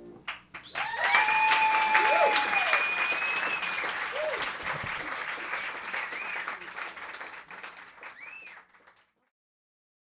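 Audience applauding at the end of a song, with a few long held cries over the clapping. The applause fades and cuts off about nine seconds in.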